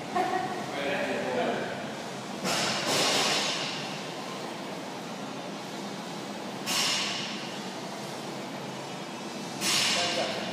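Low voices in the first two seconds, then three short hissing rushes of air, about four and three seconds apart.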